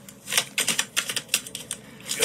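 A deck of tarot cards being shuffled by hand: a quick, irregular run of short papery clicks and snaps.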